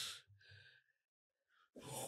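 A man's short, breathy laugh that fades out within half a second, a moment of silence, then another breathy exhale near the end.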